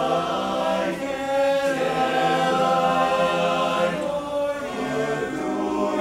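Men's barbershop chorus singing a cappella in close harmony, holding full chords that shift every second or so.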